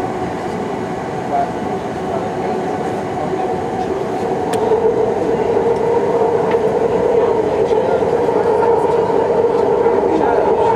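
BART train running at speed, heard from inside the passenger car: a steady rumble of wheels on rail with a humming tone that grows louder about halfway through.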